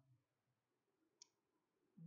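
Near silence with room tone, broken by one short, faint, sharp click a little past a second in.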